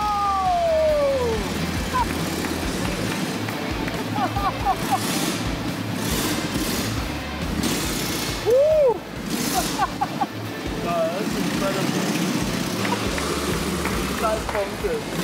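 Motorcycle engines running as riders circle the vertical wooden drum of a Wall of Death, the sound swelling each time a bike sweeps past, with pitch glides as the engines rev and a loud rise-and-fall about eight and a half seconds in. Music and voices are mixed in.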